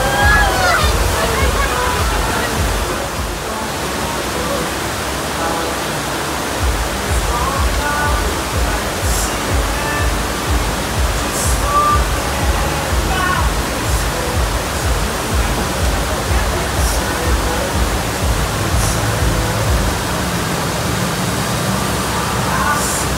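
Steady rush of water from an artificial surf wave machine, pumped as a thin fast sheet over the riding surface. Music with a steady beat plays over it, with scattered voices.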